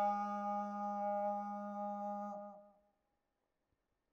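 A Buddhist monk's voice holding one long, steady chanted note of a pirith blessing chant. It dips slightly in pitch and fades out about two and a half seconds in.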